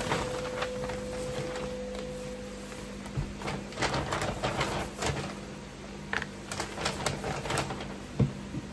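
Paper carrier bags and clothing being rustled and handled, with irregular crinkles and small clicks over a faint steady hum.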